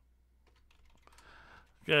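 Faint typing on a computer keyboard: a few scattered keystrokes. A man's voice begins near the end.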